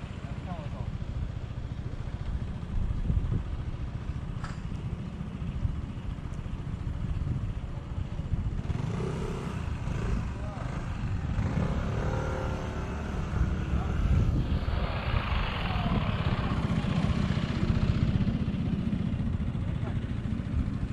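Wind buffeting the microphone in a steady, fluttering rumble that grows louder in the second half, with people's voices talking indistinctly in the background.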